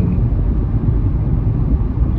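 Steady low rumble of a car driving, heard from inside the cabin: engine and road noise.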